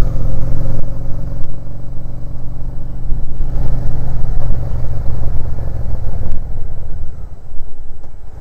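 Motorcycle engine running steadily at road speed, a low even note heard from the rider's seat, blurring a little after about three seconds.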